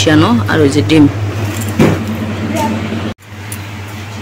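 Brief voices at first over a steady low hum; the sound breaks off sharply about three seconds in, then a quieter steady hum carries on.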